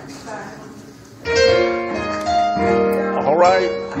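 Church keyboard playing held chords that come in suddenly about a second in, after a quiet start. A voice calls out briefly over the chords near the end.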